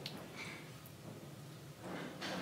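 Quiet room with a few faint small clicks and scrapes of hand work in wet mortar, as cement is put over gravel spacers on a stone course.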